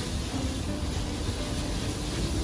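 Rice noodles stir-frying in a wok over a gas burner: a steady rumbling hiss of the flame with the sizzle of the frying.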